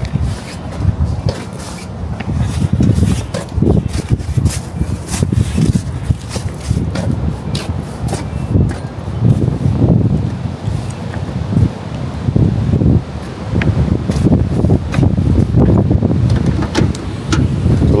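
Gusty wind buffeting the microphone, a low rumble that swells and fades over and over, with scattered sharp clicks in the first half.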